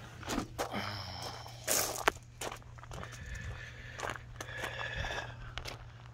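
Footsteps crunching on gravel, with several sharp clicks and knocks, the loudest about two seconds in, over a low steady hum.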